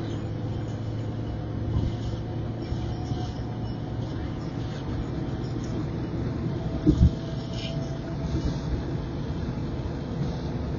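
A car driving at highway speed, heard from inside its cabin: a steady drone of tyres and engine. Two short thumps close together about seven seconds in.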